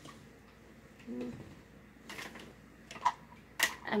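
A few light clicks and knocks of small objects being handled while a person rummages for something to cut the box tape open, the loudest near the end. A brief low murmur of a woman's voice comes about a second in.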